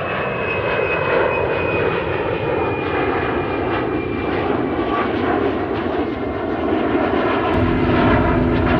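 Twin-engine jet airliner passing low overhead with its gear down on approach: a steady rush of engine noise with a thin high fan whine that slowly falls in pitch as it goes by. About half a second before the end the sound cuts abruptly to a deeper, steadier engine drone.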